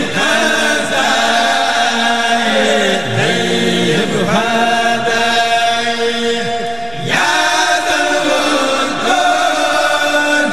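A group of men chanting a Senegalese Sufi xassida in unison, in long, held melodic lines. The chant breaks briefly about three seconds in and again about seven seconds in before the voices come back in.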